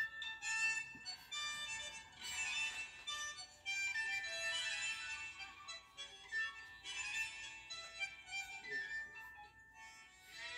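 Tango music playing, its melody carried by a violin and a reedy wind instrument in long held notes.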